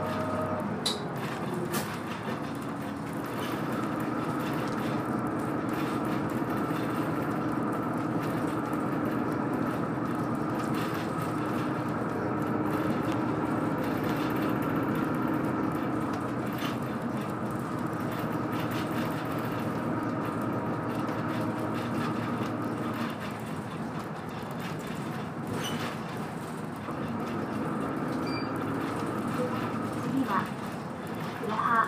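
Inside a moving route bus: the engine and drivetrain run with a steady whine over road noise and occasional rattles. The whine drops away about two-thirds of the way through as the bus eases off.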